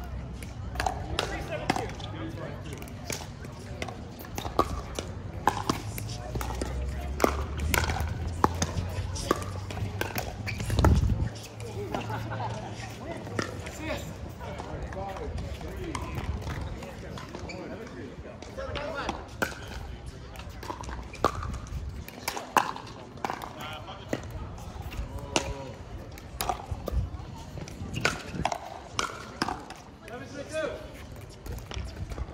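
Pickleball paddles hitting a plastic ball, sharp pops at irregular intervals, with voices talking in the background. A low rumble runs through the first third and ends with a louder knock.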